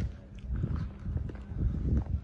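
Footsteps on cobblestones, with low gusts of wind buffeting the microphone.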